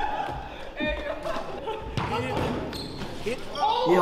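Basketball bouncing on a hardwood gym floor, a few sharp thuds about a second apart that echo in the hall.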